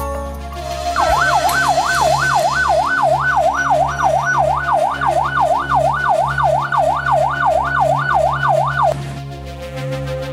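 A siren going quickly up and down in pitch, about three sweeps a second, for about eight seconds over background music.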